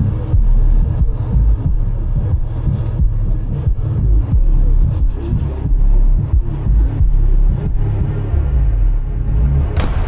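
A deep, uneven rumble under faint music, with a sharp click near the end.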